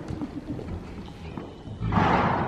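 A horse snorting, blowing air hard out through its nostrils, with one loud snort just before the end.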